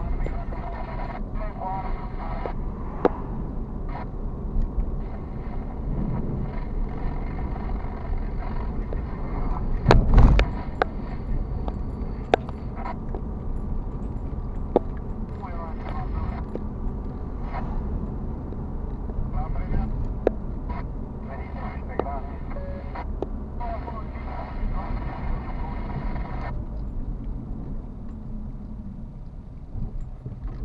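Steady road and engine noise inside a moving car's cabin, with a loud thump about ten seconds in.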